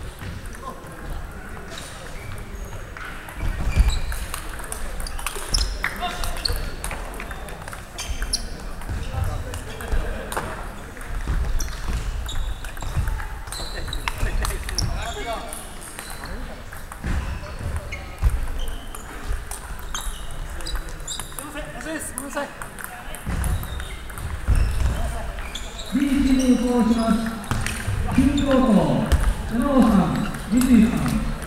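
Table tennis rally: the celluloid ball clicking off the bats and bouncing on the table in a long exchange, the defensive player chopping it back again and again. Voices in the hall throughout, louder and plainer in the last few seconds.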